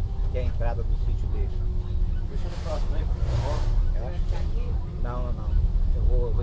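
Cabin of a bus driving on a rain-wet highway: the engine and road rumble run steadily under a faint steady hum, with muffled voices talking. A brief rushing hiss swells and fades a few seconds in.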